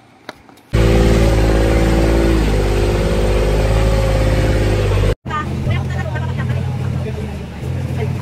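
An engine running loud and steady, starting suddenly about a second in and cutting off abruptly about five seconds in. After the cut a lower engine hum carries on with voices over it.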